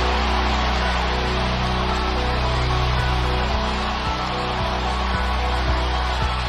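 Stadium crowd cheering as a steady loud roar after a touchdown, over a steady background music bed, with a few faint knocks.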